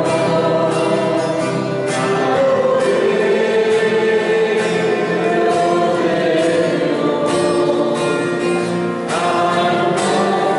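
A choir singing a religious song with instrumental backing, continuous throughout.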